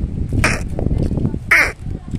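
A crow cawing twice, about a second apart, over a steady rumble of wind buffeting the microphone.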